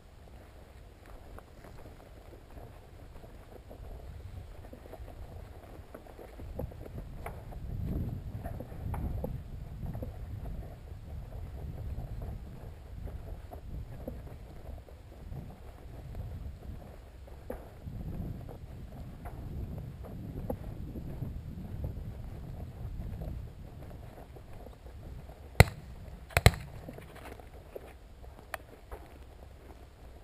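Footsteps through dry grass with an uneven rumble of wind on a body-worn camera's microphone, swelling and fading. Two sharp clicks close together near the end are the loudest sounds.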